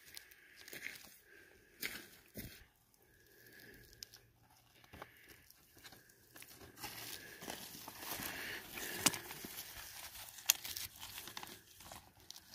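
Faint handling noise of rock samples held in a fabric work glove: soft rustling with scattered light clicks, quiet at first and busier in the second half, with a couple of sharper clicks near the end.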